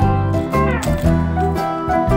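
Background music: a guitar-led tune over sustained bass notes, with a falling slide in pitch just past the middle.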